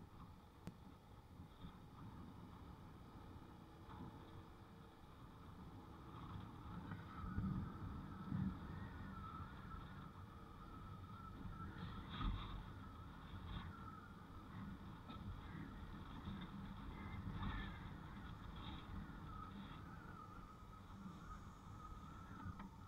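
Motorbike riding along a country road, heard from the bike: a steady low rumble of engine, tyres and wind, with louder surges about seven to eight seconds in and a faint wavering whine above it.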